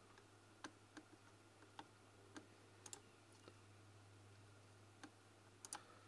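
Faint computer mouse clicks, about ten scattered and irregular, over a low steady hum.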